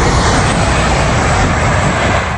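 Traffic on a two-lane highway: a loud, steady rush of tyre and engine noise from passing vehicles.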